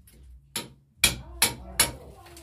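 Hammer striking a steel chisel held against a brick wall, chipping out brick and mortar to cut a recess for concealed wiring. A light tap about half a second in, then three sharp strikes in quick succession.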